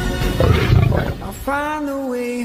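A young lion gives one short, rough roar about half a second in, over orchestral trailer music; a held musical note comes in near the end.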